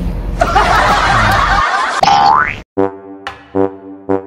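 Cartoon 'boing' sound effects, two quick rising glides about two seconds apart with a rush of noise between them, followed near the end by a short jingle of repeated pitched notes.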